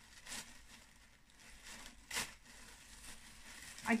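Plastic packaging rustling and tearing as a parcel is opened by hand, with two louder rustles, about a third of a second and two seconds in.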